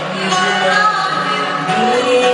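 Live singing over band accompaniment, a woman's voice leading with held notes, amplified through the hall's sound system.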